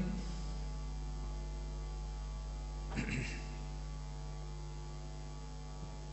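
Steady electrical mains hum with a stack of even overtones, running unchanged through a pause in speech. A brief faint sound comes about halfway through.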